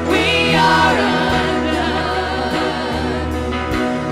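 Live gospel worship song: women singing lead into handheld microphones, backed by a choir and a band with electric guitar, over steady low bass notes and light percussion.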